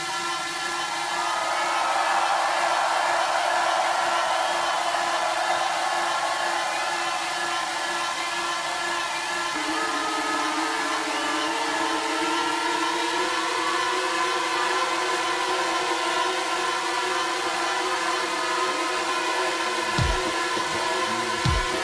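Electronic dance music in a breakdown with no kick drum: sustained synthesizer chords under a swelling noise wash. The chord shifts about halfway through.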